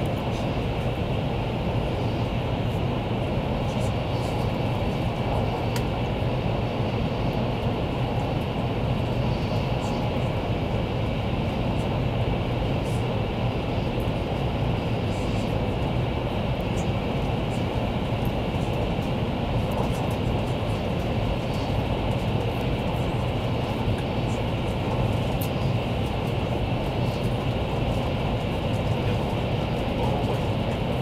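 Steady running noise inside the passenger cabin of a Taiwan High Speed Rail 700T electric multiple unit at cruising speed: a constant low hum under rushing air and rail noise, with faint ticks now and then.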